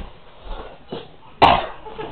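A single sharp cough from a person about one and a half seconds in.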